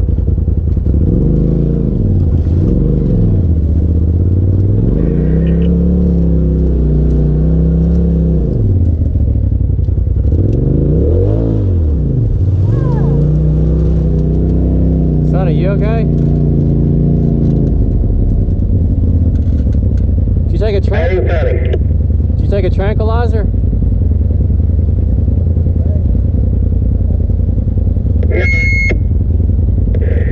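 Side-by-side UTV engine heard from the cab, revving up and down with the throttle over the first half, then running at a steadier low drone. Voices come in briefly over it about halfway and again a few seconds later.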